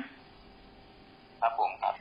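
Faint steady hiss of a recording, then a man's short spoken reply in Thai ("ครับผม") about one and a half seconds in.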